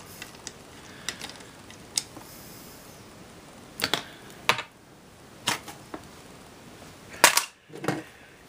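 Scattered sharp clicks and knocks of hard plastic being handled, several seconds apart, the loudest near the end: a Gorillapod-type flexible tripod and its mounting plate being turned over in the hand.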